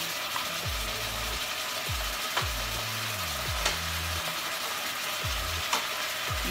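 Assorted meat and chopped onion sizzling in a hot stainless steel pot, cooking in their own juices without added water: a steady hiss with a few faint clicks.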